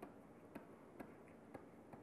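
Faint, sharp clicks of a stylus tapping on a pen tablet during handwriting, four irregular taps about half a second apart over near-silent room tone.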